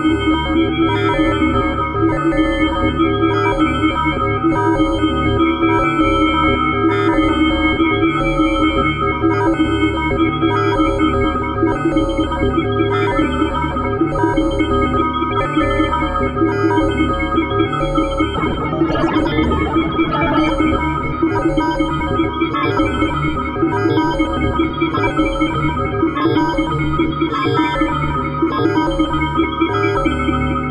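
Experimental electronic music from the Fragment additive/granular software synthesizer. Dense sustained tones are layered over a pulsing low end, with short high blips repeating rapidly. A brief noisy swell comes about 19 seconds in.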